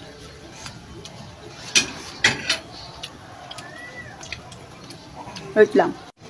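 A metal spoon clinks lightly against the wok three times, about two seconds in, over a faint steady background.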